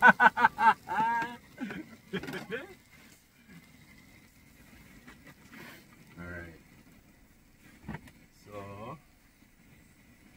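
A person laughing in quick bursts, then a few words. After that it is quiet, with a faint steady tone, two short voice sounds and a single click.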